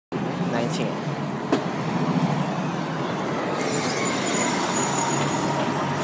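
Street traffic noise with an MTA RTS-06 city bus's diesel engine running as the bus drives off. There is a sharp click about one and a half seconds in, and a high hiss joins from about three and a half seconds on.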